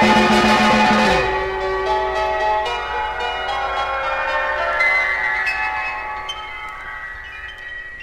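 Psychedelic rock music playing from a vinyl record: a dense passage breaks off about a second in, leaving scattered bell-like struck notes that ring on and die away.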